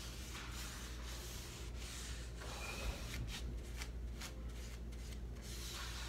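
Repeated hand-rubbing strokes over the painted wooden surface of a cabinet, an irregular back-and-forth scrubbing that comes quicker about halfway through.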